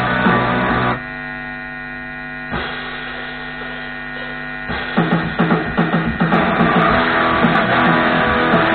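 Guitar playing through an amplifier stops about a second in, leaving only the amp's steady mains hum for several seconds, with one click partway through. The strumming starts again about five seconds in.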